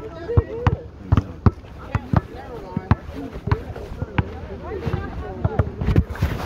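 Basketballs bouncing on a court, about three irregular thuds a second, over a background of several voices talking at once.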